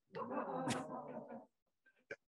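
A man laughing softly for about a second and a half.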